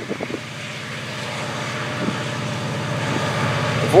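Florida East Coast EMD GP40-2 diesel locomotive 425 approaching at the head of a freight train: a steady diesel engine hum that grows gradually louder as it nears.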